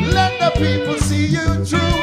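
Live band playing: a man singing into a microphone over electric guitar and bass guitar, with a steady rhythmic beat.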